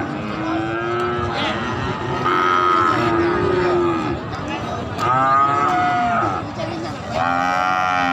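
Goats bleating: three long calls that bend in pitch, about two, five and seven seconds in, with lower-pitched calls in the first few seconds.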